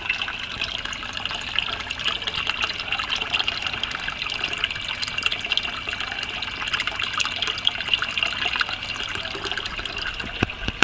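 Water splashing and bubbling steadily at the surface of an aquaponics fish tank, where a pipe runs into the water, with many small popping ticks.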